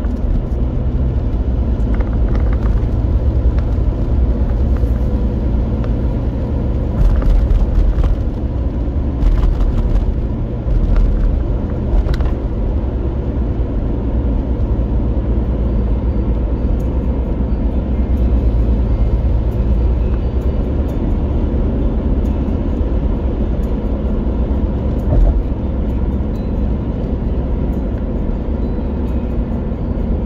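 Road noise inside a moving car's cabin: a steady low rumble of tyres and engine at highway speed. There are a few louder swells between about 7 and 12 seconds in and a short bump near 25 seconds.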